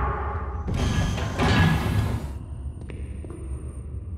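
Dramatic film-trailer score and sound design: a low rumble, with a loud noisy swell that builds about a second in and cuts off abruptly after about two and a half seconds, followed by a few sharp clicks over the rumble.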